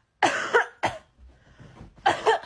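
A woman coughing twice: a longer, loud cough about a quarter of a second in, then a short second cough just before the one-second mark.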